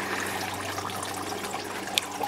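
Steady hiss like trickling running water, with a faint low hum underneath and a single short click near the end.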